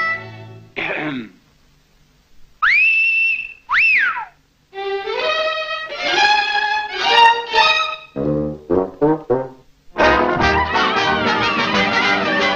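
Cartoon orchestral score in short stop-start phrases: a quick falling slide, then a two-part whistle, the first rising and held, the second rising and falling like a wolf whistle. Brass follows in a climbing phrase, then short low staccato notes, and the full orchestra comes in about ten seconds in.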